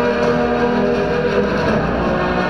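Music playing for a bodybuilding posing routine, with held, sustained notes that shift about halfway through.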